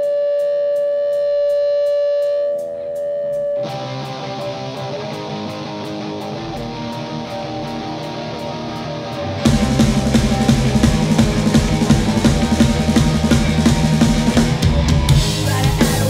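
Live punk rock band starting a song: a held note with a steady ticking above it, then electric guitar playing alone from about four seconds in, and the full band with drums and bass coming in louder about nine seconds in.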